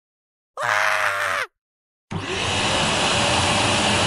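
Canister vacuum cleaner running steadily, starting suddenly about halfway through. Before it, a short pitched sound lasting under a second.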